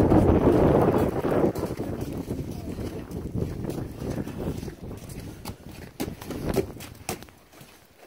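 Footsteps crunching and scuffing through snow and slush on a walkway, irregular and fading near the end. A loud rushing rustle of jacket or handling against the phone's microphone fills the first second or so.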